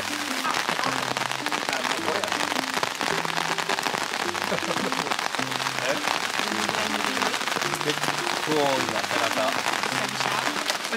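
Heavy rain falling steadily, a dense patter of drops, over quiet background music.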